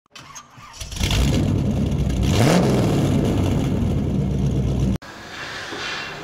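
Car engine starting, giving one quick rev, then running steadily as an intro sound effect; it cuts off suddenly about five seconds in, leaving quiet room tone.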